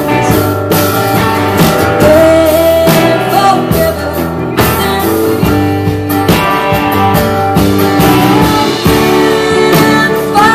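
A live band playing: strummed acoustic guitar and electric guitar over bass and drums with a steady beat.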